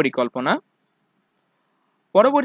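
A voice speaking in Bengali for about half a second, cut off abruptly, then silence.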